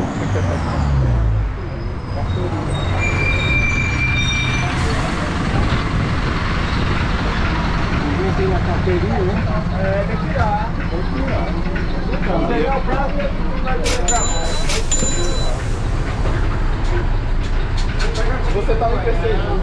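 City bus engine dropping in pitch as the bus pulls up and stops, then running steadily as a low drone, heard from inside the bus, with short high electronic tones about three seconds in and again near the end.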